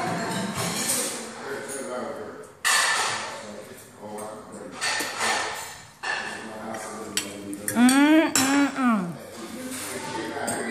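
Tableware clattering and clinking at a dinner table: scattered knocks of plates, cups and cutlery. About eight seconds in comes one drawn-out voice sound, which rises, holds and then falls away.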